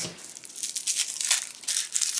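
Small crinkly wrapper around a blind-bag doll accessory being picked up and unwrapped by hand: an irregular run of quick, dry crackles and rustles.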